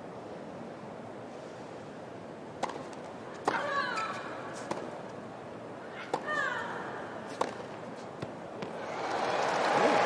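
Tennis rally: sharp racket-on-ball strikes about once a second, two of them with a player's loud vocal grunt. Near the end the crowd swells into cheering and applause as the point ends.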